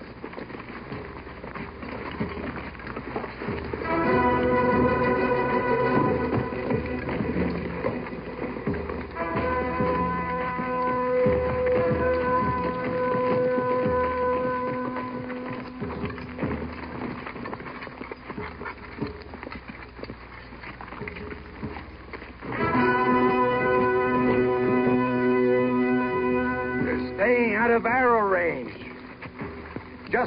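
Trumpets blown in three long, steady held blasts, one after another.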